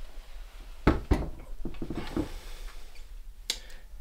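Handling knocks and clatter as a Sailrite sewing machine is hooked to a hand-held luggage scale and weighed: two sharp knocks about a second in, softer rattles after, and a single click near the end.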